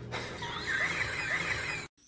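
A high-pitched squeal with a wavering pitch, cut off suddenly near the end.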